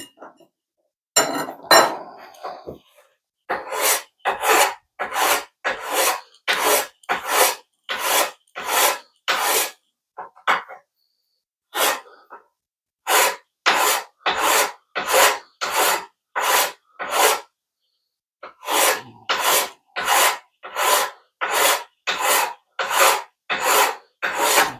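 Hand file rasping across the metal shoe of a DeWalt DCS573 circular saw in steady push strokes, about two a second, with a brief break about midway and again near the end. Metal is being filed off the shoe slowly by hand, which is not taking much off.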